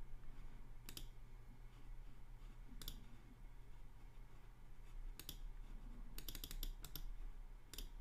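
Faint computer mouse clicks: single clicks about one, three and five seconds in, then a quick run of several clicks, then one more near the end. A low steady electrical hum lies under them.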